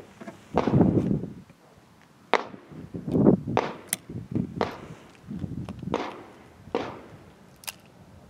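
A string of loud bangs with short echoing tails, spaced irregularly, like gunshots from other lanes at an outdoor range. Two sharp metallic clicks come through as well, one about four seconds in and one near the end as the revolver is lifted.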